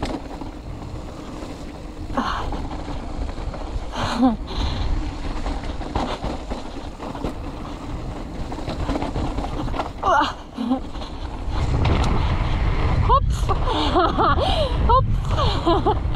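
Mountain bike rolling fast down a dirt and gravel trail, recorded on a helmet or chest-mounted action camera: wind rumbling on the microphone with tyre and trail noise, growing louder about three-quarters of the way through as speed picks up. Short wordless vocal sounds, like gasps or exclamations, come a few times.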